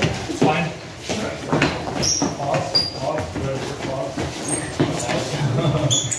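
Several people talking at once in a large hall, with a few short high squeaks scattered through.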